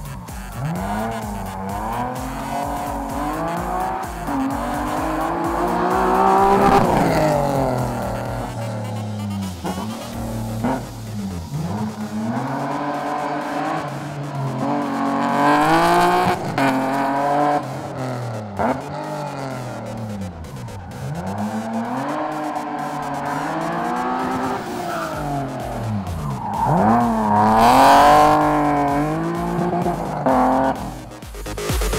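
Race car engine revving hard, the revs climbing and dropping again and again as the car accelerates and slows through a tight, twisting course, loudest near the end.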